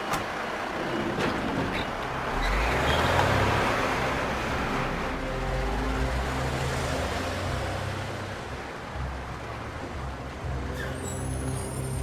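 Fire engine's diesel engine running with a low steady rumble, and a loud hiss of air that swells about two seconds in and fades over the next few seconds.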